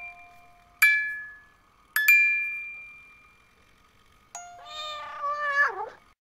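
Bell-like struck notes in the manner of a glockenspiel, each ringing out and fading: one about a second in, then two close together about two seconds in. Near the end comes a single drawn-out cat meow that wavers and falls in pitch as it ends.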